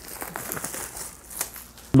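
Paper pages of a thin book being flipped through to the back, a run of light rustles and flicks.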